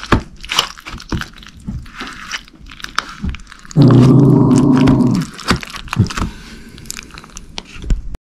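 A metal fork scraping and clicking against a plastic cup while stirring macaroni and cheese, in a run of short irregular scrapes. Partway through comes a loud, steady low hum lasting about a second and a half.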